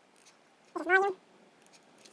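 A single short, high-pitched animal call about a second in, rising then holding its pitch.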